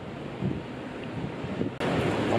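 Wind buffeting the microphone outdoors, a steady low rumble, with the level jumping up abruptly near the end.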